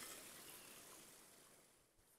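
Near silence: a faint, even hiss of the steaming hot-spring stream, fading out after about a second.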